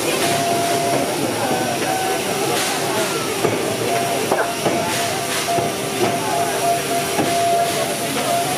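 Steam locomotive 555.3008 hissing steadily as it stands under steam, with faint steady tones and occasional light clicks.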